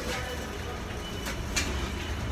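Steady low mechanical rumble, with two short sharp knocks about a second and a half in.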